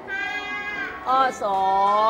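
Young children's voices calling out "ข้อสอง" ("question two") together, drawing the words out in a sing-song. The call starts about a second in and follows an earlier held voice sound.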